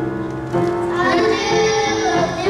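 Children singing a song, holding notes that step to a new pitch about every half second.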